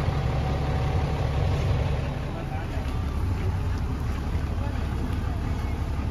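A steady low rumble under general outdoor background noise.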